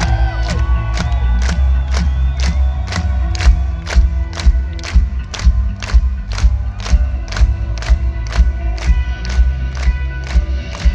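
Rock band playing live at high volume: heavy bass and guitar under a steady drum beat of about three hits a second. The crowd shouts and cheers along, most strongly near the start.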